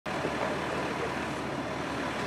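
Steady vehicle engine and traffic noise, with indistinct voices of a crowd in the background.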